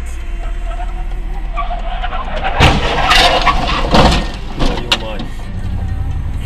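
Steady low engine and road drone heard inside a moving car. A burst of loud, sharp noises mixed with a person's voice comes about two and a half to five seconds in.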